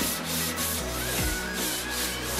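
Dried drywall joint compound being hand-sanded with a sanding block, in quick back-and-forth strokes at about four a second.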